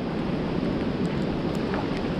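Steady hiss of wind and rain outdoors, with no distinct events.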